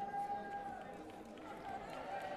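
A voice holding one long shouted note for about a second and a half over the background hubbub of a sports hall.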